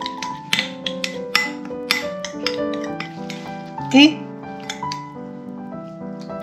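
Light background music, with a metal spoon clicking against a glass bowl as melted garlic butter is stirred, the clicks mostly in the first half. A single spoken word comes about four seconds in.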